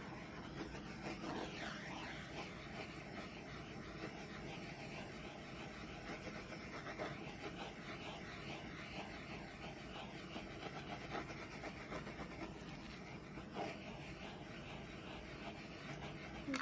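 A handheld torch hissing steadily, its flame passed over wet acrylic paint to bring silicone cells up to the surface.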